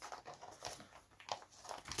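Faint, scattered light clicks and rustles of plastic binder sleeves being handled.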